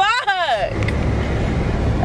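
Steady low rumble of a car's road and engine noise heard inside the cabin while driving.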